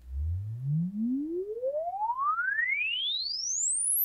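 A sine-sweep test tone gliding smoothly upward from a low hum to a very high whistle over about four seconds, rising at an even pace through the octaves. It is the measurement signal used to record the ear's frequency response.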